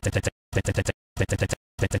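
A short vocal snippet ('better') stutter-looped by editing, repeating about every half second with silent gaps between the repeats; each repeat breaks into three or four quick choppy pulses.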